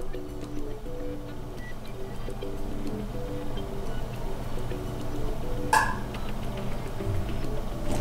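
Soft background music: a gentle melody of short, evenly held notes, with a single sharp click a little before six seconds in.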